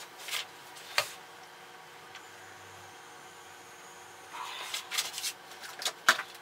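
Quiet room tone with a sharp click about a second in, then fabric rustling for about a second as it is handled near the end.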